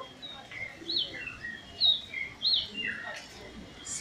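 A bird chirping: three short, high notes, each rising and then falling, about a second in, near the middle and just after, with fainter sweeping calls between them.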